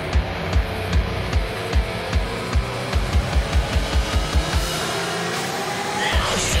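Rock song with drums and guitar. The kick drum beats about two and a half times a second, doubles to about five a second around the middle, then drops out briefly near the end.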